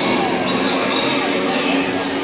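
A voice over an ice arena's public-address system, echoing through the large hall.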